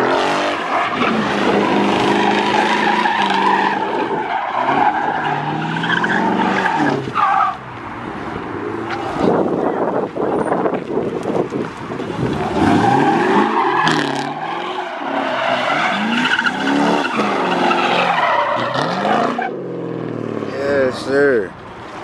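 V8 car engine revving hard, its pitch rising and falling, with tyres squealing and skidding on the asphalt during burnouts or donuts. There are two long stretches of hard revving, with a quieter spell in the middle and another near the end.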